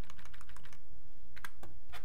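Keystrokes on a computer keyboard: a quick run of faint clicks, then two sharper taps near the end, over a steady low hum.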